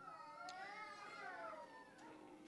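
A faint, drawn-out vocal sound from someone in the room, wavering up and down in pitch for about a second and a half, with a single faint tick about half a second in.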